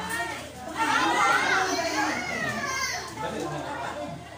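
Children's voices at play, shouting and chattering, with high, gliding calls from about a second in to about three seconds in; adult talk runs underneath.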